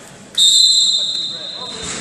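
Wrestling referee's whistle: one long, steady, shrill blast that starts about a third of a second in and lasts about a second and a half, stopping the action.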